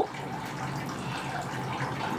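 A steady, even background hiss with no distinct events.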